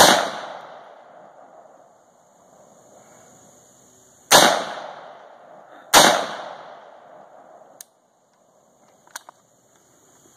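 AR-15-style rifle firing three single shots: one at the start, then two more about four and six seconds in, a second and a half apart. Each shot is followed by a long echo off the surrounding woods. Two faint clicks follow near the end.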